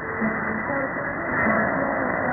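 Weak shortwave AM broadcast from Radio Djibouti on 4780 kHz: a faint voice half-buried in steady hiss and static, heard muffled and narrow-band through the receiver's filter.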